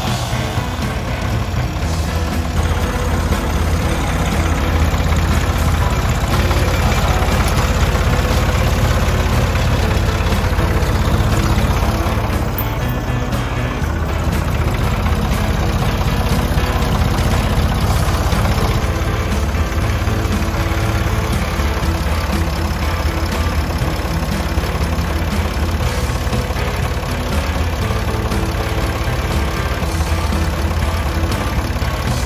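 Ford 340A tractor engine idling steadily, under background music.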